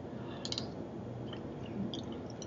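Close-miked mouth sounds of a person eating from a spoon: a quick cluster of wet clicks as the spoonful goes in about half a second in, then a few sparser clicks as she starts to chew.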